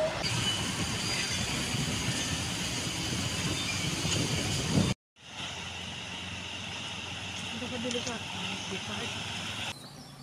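Town street traffic: cars and a pickup passing with steady road and engine noise. After a sudden cut about halfway, quieter forest-road ambience with a steady high buzz of insects.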